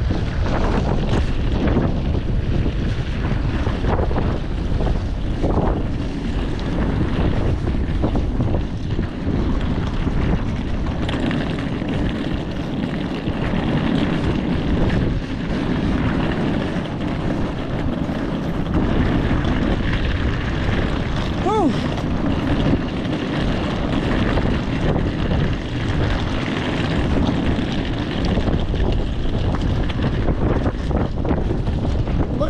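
Strong, cold wind buffeting the camera microphone: a steady, loud rumble of wind noise.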